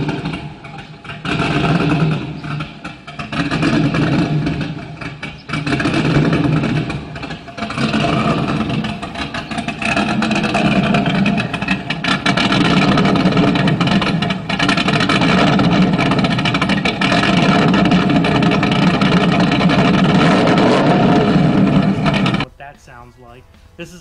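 LS1 V8 of a 2001 Pontiac Trans Am WS6, fitted with a Lunati "Hellraiser" asymmetric-lobe cam, idling at the exhaust tips on stock injectors and an untuned stock 2001 computer. The sound swells and falls several times over the first few seconds, then holds steady and cuts off suddenly near the end.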